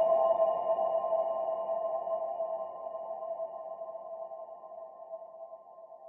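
Meditation music: a single struck, bell-like tone with several overtones, ringing and slowly fading until it is nearly gone by the end.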